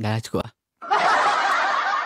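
The backing music cuts off and a short chuckle follows. After a brief silence comes a dense, busy stretch of many overlapping snicker-like laughs.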